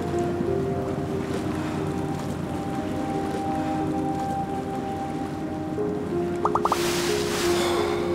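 Soft background score of held, slowly changing melody notes. Near the end a short surf-like swoosh of noise sweeps in and dies away.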